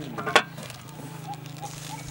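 Metal cookware clinking once, sharp and loud, about a third of a second in, as a lid and bowl are handled over a steaming cooking pot. A steady low hum runs underneath.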